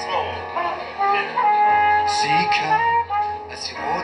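Live music in an instrumental passage: a flugelhorn plays held melody notes over the band, with short hissy percussive beats in the second half.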